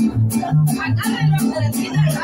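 Mariachi band playing an instrumental vamp: a guitarrón plucks a bass line alternating between two low notes about three times a second, under strummed guitars.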